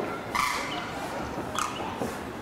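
Two short animal calls about a second apart.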